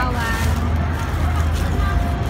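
People talking in the background over a steady low rumble, with a few voices near the start and a faint steady tone later on.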